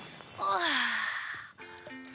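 A breathy sigh falling in pitch, then light background music with steady held notes starting near the end.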